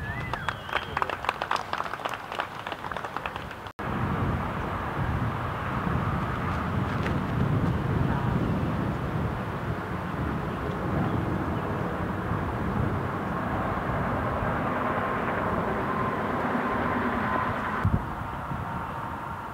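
Outdoor field ambience: a steady low rumble like wind on the microphone, with faint murmur of distant voices. A rapid run of ticks or chirps fills the first few seconds, and the sound cuts out abruptly just under four seconds in.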